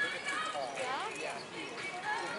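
Voices of people talking close by, with light knocks underneath.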